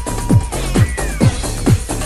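Early-1990s rave/house dance music from a DJ mix: a steady four-on-the-floor kick drum at a bit over two beats a second, with synth lines over it and a short falling synth glide about a second in.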